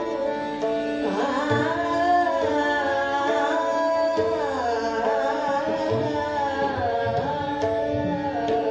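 A woman singing Hindustani classical khayal in Raag Bhairav, her voice gliding and wavering over held notes from about a second in. She is accompanied by tanpura drone, harmonium and low tabla strokes.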